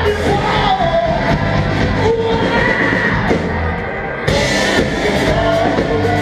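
Live rock band playing loud, with a singer's voice over drums and guitars. After a brief slight dip the band comes back in hard about four seconds in.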